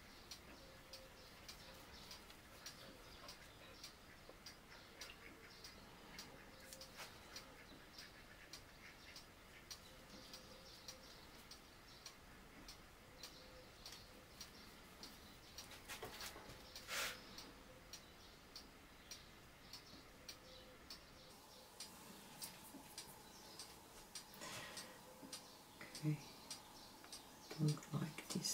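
Near silence: faint room tone with soft, evenly spaced ticking throughout, and a brief rustle about two-thirds of the way through.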